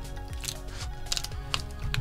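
Soft background music, with several light clicks and taps as a replacement laptop battery pack is set into a MacBook Pro's aluminium bottom case and pressed down by hand.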